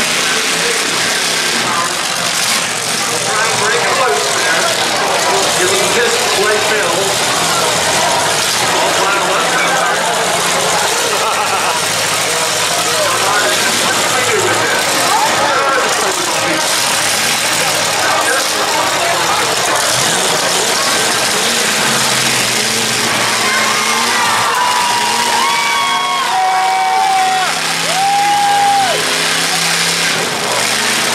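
Demolition derby cars' engines running and revving under the steady chatter of a grandstand crowd, with a few long shouts near the end.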